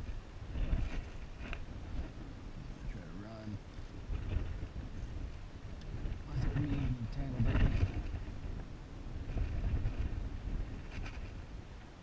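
Wind buffeting a camera microphone in gusts, with short faint voice sounds about three seconds in and again around seven seconds.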